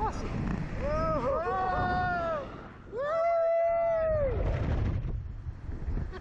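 Two long screams from riders on a slingshot ride, each held about a second and a half and arching up then down in pitch, one straight after the other. Wind buffets the microphone underneath and grows louder near the end.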